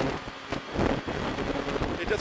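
Renault Clio R3 rally car's 2.0-litre four-cylinder engine driven hard, heard from inside the cabin with heavy road and wind noise. The level dips briefly just after the start, then swells back up about half a second in.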